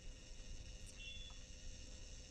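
Faint electronic whirring of a sci-fi binocular scope sound effect, with a steady hum and a short high beep about a second in.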